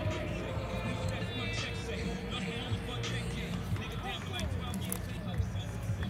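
Spectators chattering close by over music with sustained notes.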